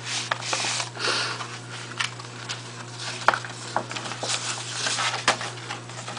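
Paper mailer being opened and a printed card insert pulled out and handled: rustling and crinkling paper with scattered crisp clicks and snaps, over a steady low hum.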